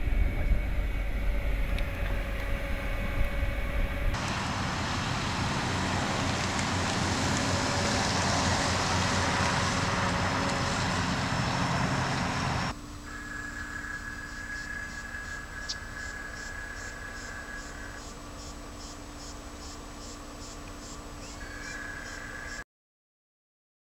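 Fiat Grand Siena sedan driving on a paved road: engine and tyre noise, a heavy low rumble at first, then a steady rush of road noise. About thirteen seconds in it cuts abruptly to a quieter steady hum with faint, regular high ticking.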